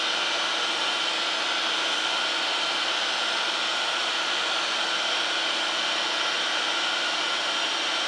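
A machine running steadily, an even airy whir with a faint hum in it, no strokes or changes.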